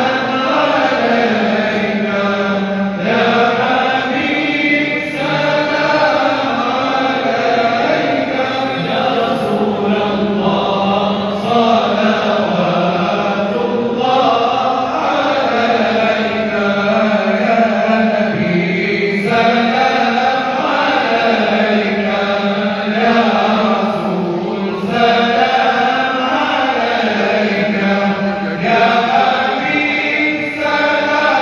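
Voices chanting a slow devotional recitation together, the melody rising and falling in long phrases without a break.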